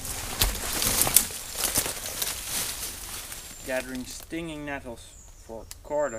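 Irregular crackling and rustling of leaves and plant stems being handled and broken in dense undergrowth for the first few seconds. This is followed near the end by short, wordless, wavering voice sounds.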